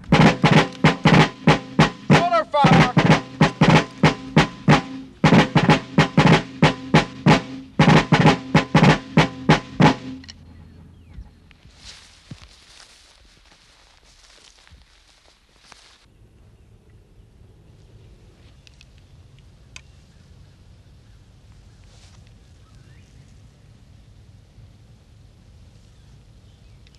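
Military snare (field) drum beating rapidly in short phrases for about ten seconds, then stopping abruptly. After it, only faint background noise with a few soft clicks.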